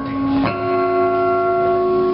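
Electric bass guitar played solo through an amplifier: a short note, then about half a second in several notes struck together and left to ring steadily as a held chord.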